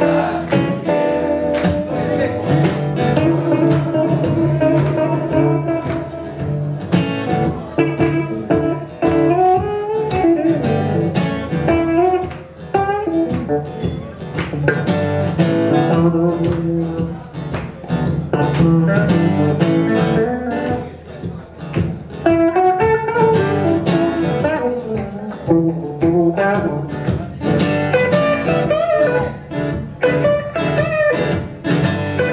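Instrumental break in a live blues-rock song: a strummed acoustic guitar under a red semi-hollow electric guitar playing a lead line with bent notes.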